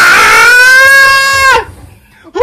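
A man's voice holding one long, loud, high sung note. It slides up into the note, holds it for about a second and a half, then breaks off sharply.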